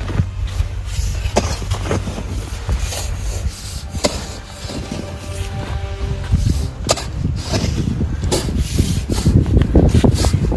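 A mattock striking and scraping dry, stony soil, with a sharp strike every two to three seconds and dirt and stones sliding and rattling between strikes. Background music plays under it.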